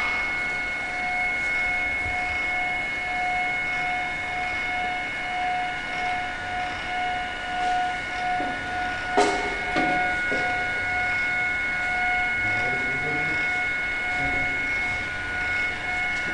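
CNC router's stepper-motor axis drives giving a steady multi-tone whine as the machine travels to its home reference position. A sharp click about nine seconds in.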